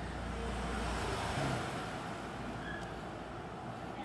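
Low rumble and hiss of passing road traffic, swelling about a second in and then easing off.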